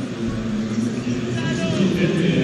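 Stadium crowd noise at an athletics track: a steady crowd hubbub with distant voices mixed in.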